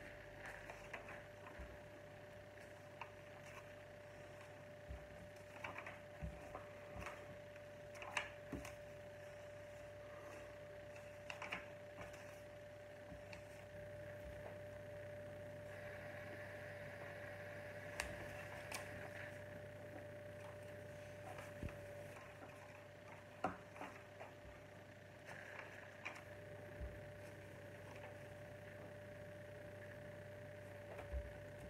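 Plastic Lego bricks being handled and pressed together: faint, scattered small clicks and taps over a steady hum, with soft rustling twice in the second half.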